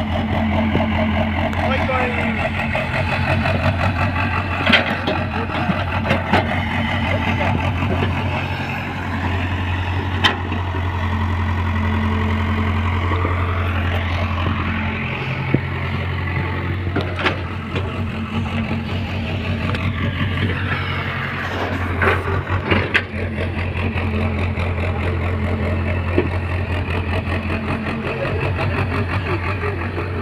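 Tracked hydraulic excavator's diesel engine running steadily, its pitch and load shifting a few times, with several sharp knocks over the hum.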